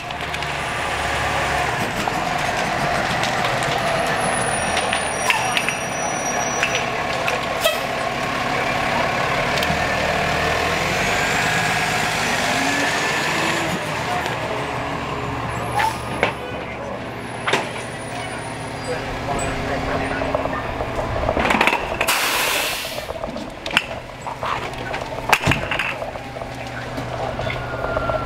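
Fire engine running close by, with a short hiss of its air brakes late on. Voices sound in the background.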